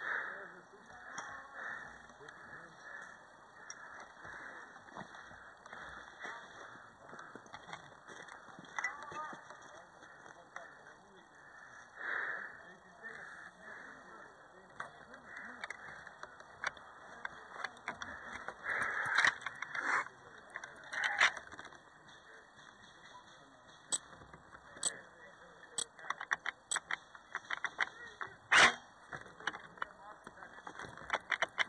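Outdoor airsoft skirmish: indistinct distant voices with scattered sharp clicks and cracks, thickening into a quick run of clicks toward the end, with the loudest crack near the end.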